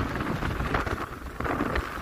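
Wind buffeting the microphone of a skier on the move, mixed with skis sliding and scraping over groomed snow: a steady rushing noise with a low rumble.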